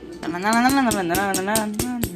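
A voice singing a wavering, wordless tune that rises and falls, over a quick run of sharp rattling clicks.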